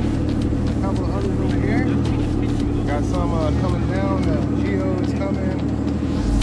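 Personal watercraft engines running steadily at low speed, with indistinct voices over the top.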